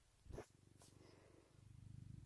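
A seal-point cat purring close up, a faint, even low rumble that grows louder near the end. A brief rustle comes about a third of a second in.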